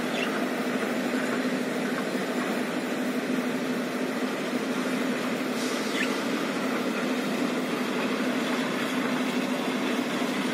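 A steady mechanical hum of background noise with a constant low tone, unchanging throughout. There is a brief faint high sound about six seconds in.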